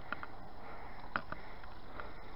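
Low, steady background hiss with a few faint, short soft sounds, the clearest about a second in.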